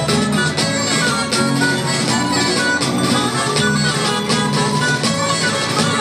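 Live Spanish jota folk music played by a rondalla: plucked guitars and lutes run a quick, lilting tune over a steady accompaniment, with sharp percussive strokes keeping the beat. This is an instrumental passage, with no singing.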